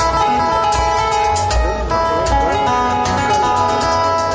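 A live band playing an instrumental piece: acoustic guitar to the fore, with keyboard and drums.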